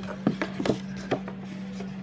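A few short, sharp clicks in quick succession over a steady low hum.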